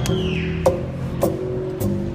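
Swing band playing a quiet passage: guitar chords and bass notes, with a crisp drum tick on about every beat, four in all.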